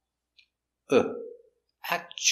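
A man's voice pronouncing one isolated speech sound about a second in, then the start of another short sound near the end: single sounds spoken apart as a pronunciation drill.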